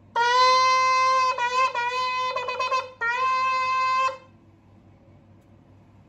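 A 15-inch Jericho shofar being blown at a steady, clear pitch. It gives one long blast, then a run of short broken notes, then a second long blast that stops about four seconds in.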